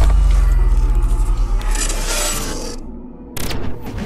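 Cinematic horror sound effect: a sudden deep boom opening onto a low rumbling drone, with a rushing swell that rises and fades in the middle, then a second sharp hit a little before the end.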